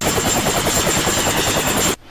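A fast-fluttering whirr like helicopter rotor blades, used as a TV promo sound effect, with a steady high whine above it. It starts suddenly and cuts off suddenly.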